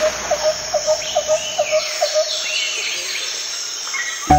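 Outdoor wildlife ambience: a rapid series of short chirps, about five a second, stopping about two seconds in, with birds calling in sweeping whistles above it over a steady hiss.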